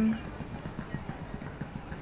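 A quick, irregular run of faint knocks and clatter over steady outdoor background noise.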